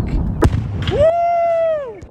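An explosion: a deep rumble with a sharp crack about half a second in, dying away after about a second. A long high whooping "woo!" cheer follows, rising, holding and then falling away.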